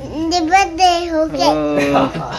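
A young child singing in long, drawn-out notes. A lower voice joins in near the end.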